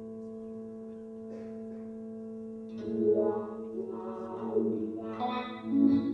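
Amplified guitar playing live: a steady drone of sustained tones, then about three seconds in, plucked notes ring out louder over it, with another strong pluck near the end.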